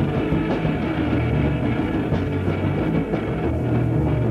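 Punk rock band playing an instrumental stretch: electric guitar and drum kit at a steady beat over a shifting bass line, with no vocals.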